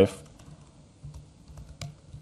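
Faint keystrokes on a laptop keyboard as a terminal command is typed: a few separate key clicks, the sharpest one near the end.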